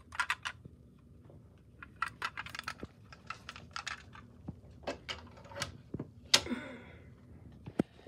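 Small clicks and taps of a diecast stock-car model being handled and set down, with a sharper knock about six and a half seconds in.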